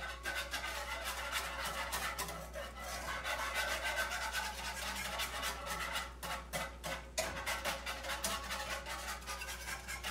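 Wire whisk scraping and stirring a cream sauce in a nonstick skillet, with quick repeated strokes against the pan that start abruptly.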